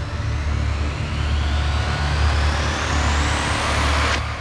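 Trailer sound design: a rising whooshing sweep that climbs steadily in pitch over a deep rumbling drone, building to a sharp break at the end.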